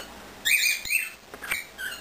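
Pet birds chirping: a run of short, high calls that fall in pitch, beginning about half a second in.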